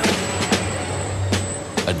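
Factory machinery of a robotic truck-cab assembly line: a steady low hum with a few sharp clacks, about half a second in and again near the end.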